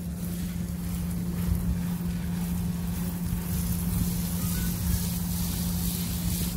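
A motor hums steadily at a low pitch, with wind rumbling on the microphone.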